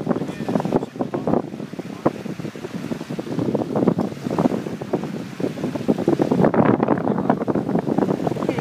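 Small waves washing onto a sandy shore, with wind buffeting the microphone in irregular rushes.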